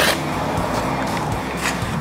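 Background music with steady held notes, and a brief click at the very start.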